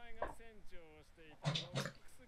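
Subtitled Japanese anime dialogue playing quietly: a man's voice speaking in short phrases.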